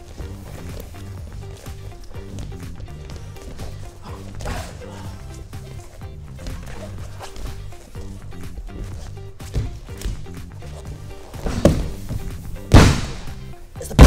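Background music with a steady beat, with a few thuds of bodies landing on a training mat; the loudest thud comes a little before the end, as the two grapplers go down to the floor.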